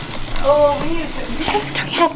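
Speech only: a person's brief voice sounds or words that the recogniser did not write down.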